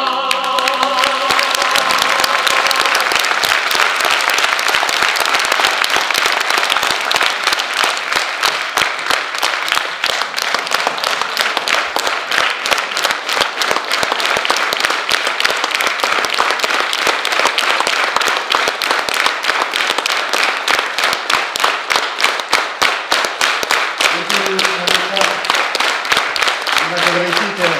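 A large audience applauding after an operatic duet, with the last sung note dying away in the first couple of seconds. From about halfway the clapping falls into a steady rhythm in unison.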